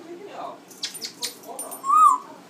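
Young African grey parrot vocalising: a short chattering call, a few sharp clicks, then a loud, short whistle near the end that rises and falls in pitch.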